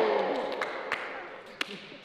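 A small group cheering and laughing after a landed skateboard trick, the noise fading away, with a few sharp taps.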